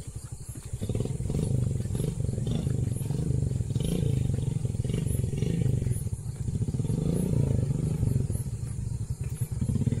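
Motorcycle engine running at low revs, louder from about a second in, its pitch and level rising and falling as it labours through a slippery mud track.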